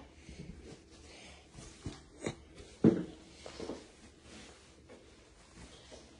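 Faint handling and rustling noise, with a few short clicks or knocks about two to three seconds in.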